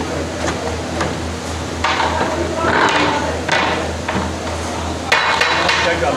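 Long metal ladle knocking and scraping against the side of a large aluminium cooking pot as a big batch of potato and radish-pod sabzi is stirred. It comes as a series of sharp knocks and scrapes, the densest run near the end, over a steady low hum.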